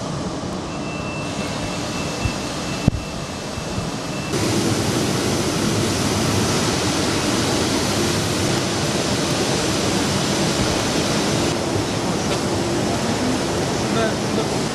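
Steady hiss and hum of textile dyeing and finishing machinery on a factory floor, with a faint high whistle over the first few seconds. About four seconds in it becomes louder and stays so.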